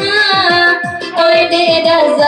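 Saluang dangdut music: a woman singing into a microphone over an electronic keyboard's dangdut rhythm. The rhythm is a deep drum whose pitch drops on each hit, about four hits a second.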